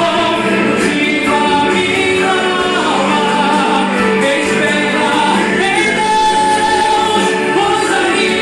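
A woman singing a Portuguese-language gospel song into a microphone, holding long notes with slides in pitch, over backing music.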